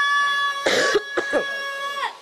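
A man coughing twice into a handkerchief held at his mouth, close to the microphone, over a steady high ringing tone from the sound system.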